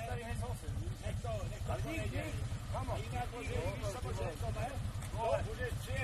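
Motor trike's engine idling with a steady, low, even pulse, with men's voices over it.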